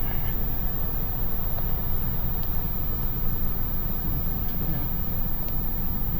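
Steady low rumble heard inside the cabin of a parked 2016 Audi Q3, with the vehicle running at a standstill.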